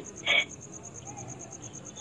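A brief fragment of a man's voice, then a pause filled with low room noise and a faint, high-pitched chirp pulsing evenly several times a second.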